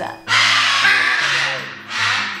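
A macaw giving one long, loud, harsh squawk lasting about a second and a half, starting shortly after the start.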